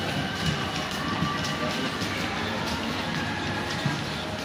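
Steady background noise of a shopping-mall corridor: an even wash of sound with a few faint steady tones and small knocks, and no voice standing out.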